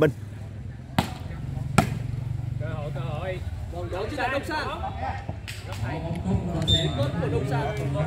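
A volleyball struck by hand: two sharp slaps about a second apart near the start, then a few lighter hits as the rally goes on, over shouting voices of players and spectators.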